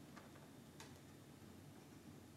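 Near silence with room tone and two faint clicks, the second louder, from the lecturer's laptop being worked at while a video plays.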